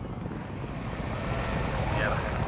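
A field of racehorses galloping on turf, their hooves drumming together in a dense low rumble.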